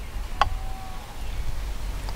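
A single sharp click about half a second in, followed by a brief thin whistle-like tone, over a low steady outdoor rumble.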